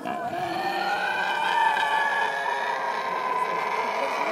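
Llama's alarm call: one long, high call held for about four seconds, its pitch falling slightly as it goes.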